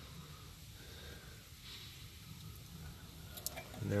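Faint sounds of a hand-stroked refrigerant oil pump pushing POE oil through a hose into an air conditioner's suction line, with a soft hiss about halfway and a couple of light clicks near the end.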